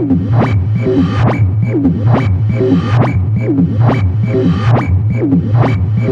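Modular techno track in a breakdown with the kick drum dropped out: a pulsing bass and a repeating synth blip that sweeps down in pitch, about two a second, over a steady high ping.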